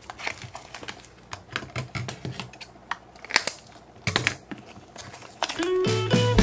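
Rubber balloon being torn and peeled by hand off a ball of gel water beads: irregular small clicks and crackles. Music tones come in near the end.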